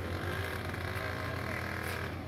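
Diesel engine of a hydraulic excavator running with a steady low hum. A higher droning tone rises in about halfway through and holds.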